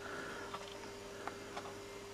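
Faint steady hum with a thin constant tone, overlaid by a few soft, irregular clicks.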